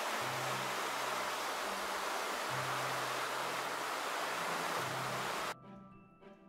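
Water rushing white over a drop in a concrete canal, a loud steady rush that stops suddenly about five and a half seconds in. Soft background music with a low repeating note plays underneath.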